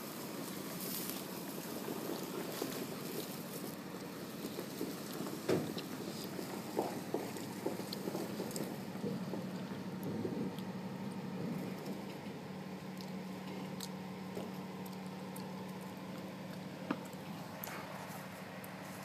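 Flatbed truck's engine running slowly with a steady low hum as the truck creeps along, with scattered clicks and rustles throughout.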